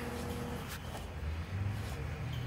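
Quiet room tone: a low steady hum, with one faint click about three quarters of a second in.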